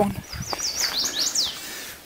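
A songbird singing a quick run of short, high, repeated falling notes, followed by two longer falling notes.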